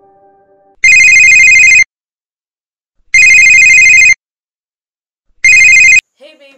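Mobile phone ringtone: a loud electronic trilling ring sounding three times, each ring about a second long and about two seconds apart, the third cut short. Soft music fades out just before the first ring.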